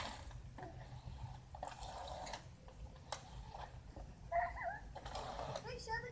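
Faint children's voices, with a few short bursts of hiss and a single click.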